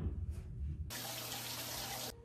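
Shower water spraying onto a tiled wall, a steady rush that starts suddenly about a second in, after a low rumble.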